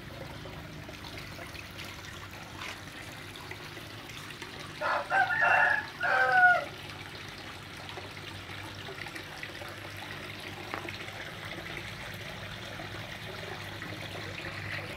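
A rooster crows once, about five seconds in, its call ending on a falling note. Water trickles steadily underneath.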